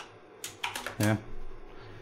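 Computer keyboard typing: a few separate key clicks within the first second.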